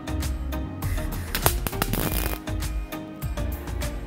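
Background music with a steady beat; about a second in, a Bossweld MST188X MIG welder's arc crackles in a short burst lasting about a second and a half as a weld is laid on rusty sheet steel.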